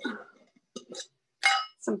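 A brief clink of a small hard object with a short ring about one and a half seconds in, between spoken words.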